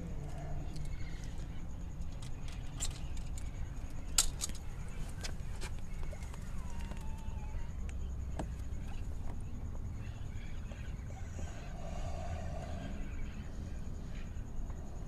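Faint handling noise over a steady low rumble, with a few light clicks; the sharpest click comes about four seconds in.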